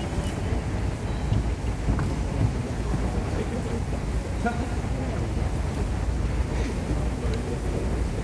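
Steady low rumble of background noise, with faint voices of nearby people murmuring.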